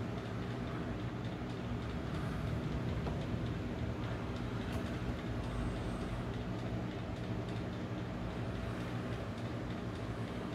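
Steady low hum with several constant tones, the background drone of a room machine.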